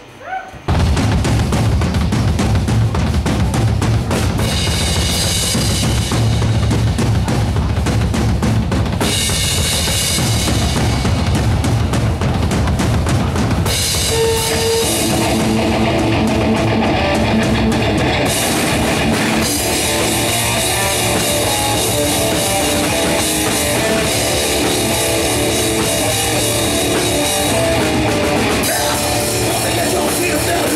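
Heavy metal band playing live: after a brief pause the song starts suddenly, under a second in, with dense drumming under distorted guitar and bass. About halfway through the drums ease off for a few seconds, then the full band comes back in.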